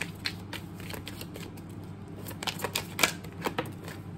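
A deck of tarot cards being shuffled by hand: a run of quick card clicks and flicks, thickest about two and a half to three and a half seconds in.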